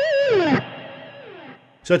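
Distorted electric guitar holding the last note of a minor 7th arpeggio with a brief vibrato, then sliding down the neck and fading out about a second and a half in.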